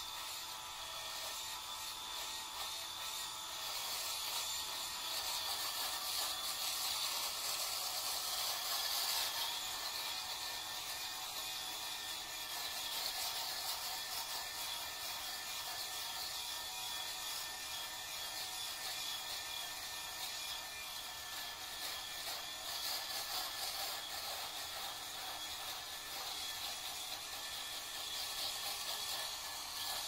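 Cool Skin electric shaver running steadily as it is moved over the cheeks and neck, shaving off stubble, slightly louder for a few seconds from about 4 seconds in.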